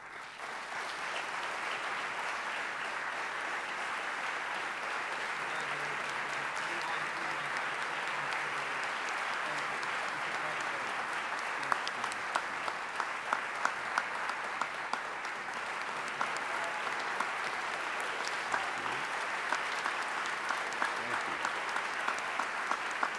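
Audience applauding steadily, with single sharp claps standing out more clearly in the second half.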